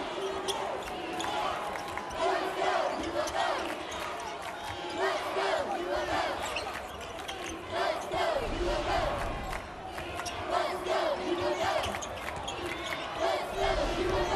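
Arena sound of a college basketball game: a basketball dribbling on the hardwood court, repeated knocks over a steady crowd din with scattered shouts.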